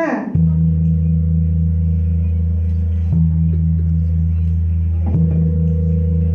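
A large bossed ceremonial gong is struck three times with a padded mallet, about three seconds and then two seconds apart. Each stroke starts a loud, deep, sustained ring, struck as the signal that opens the event.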